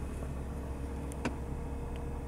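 Car engine idling, heard from inside the cabin as a steady low hum, with a faint click a little past a second in.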